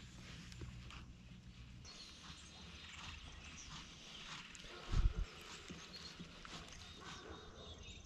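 Quiet outdoor ambience on the water with faint scattered ticks and clicks, a low hum for the first two seconds, and a single dull thump about five seconds in.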